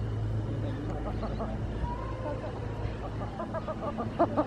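Steady low outdoor rumble under two short runs of rapid, repeated high bird calls, one about a second in and one near the end.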